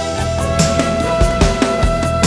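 Instrumental karaoke backing track for a Vietnamese tân cổ song, in its modern-song (tân nhạc) section: a long held melody note over a band accompaniment with light strikes.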